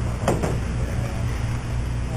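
Steady low hum of room noise, with one short, sharp noise about a quarter second in.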